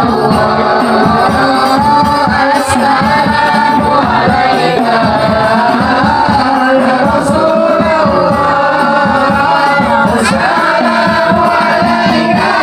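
A group of men singing sholawat in unison, led by one voice on a microphone, over fast, steady hand-drumming on frame drums.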